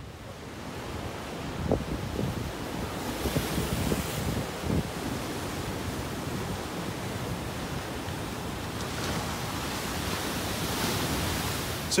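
Ocean surf breaking and washing over rocks: a steady rush of water that surges louder a few seconds in and again near the end, with wind rumbling on the microphone.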